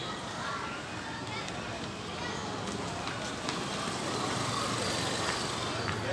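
Street ambience: a steady hum of traffic with indistinct voices of passers-by.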